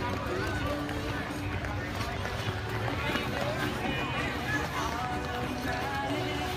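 Overlapping background chatter of many voices, children's voices among them, with music playing underneath.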